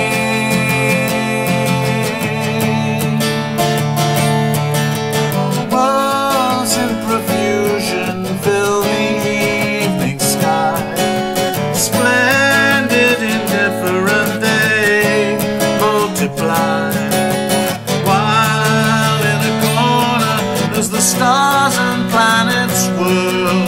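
Acoustic guitar played solo, chords strummed and picked in an instrumental passage of a song.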